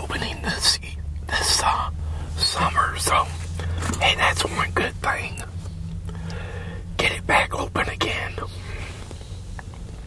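Whispered speech close to the microphone, in irregular bursts, over a steady low hum.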